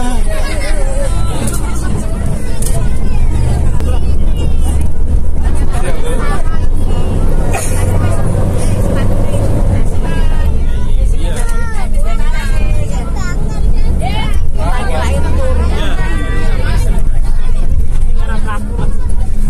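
Many passengers talking at once inside a moving bus, over the bus's continuous low engine and road rumble.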